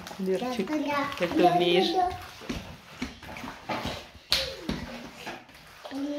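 A person talking for about two seconds, then soft wet squelching and scattered clicks of hands kneading sauce-covered raw chicken pieces in a plastic bowl, with one sharper click about four seconds in.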